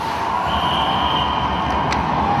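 Ice hockey rink sound during play: a steady wash of crowd and game noise from the rink, with a faint, thin high tone lasting about a second, starting about half a second in.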